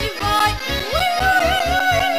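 Romanian folk dance music with a steady bass beat of about four pulses a second. About halfway through, a high note slides up and is held.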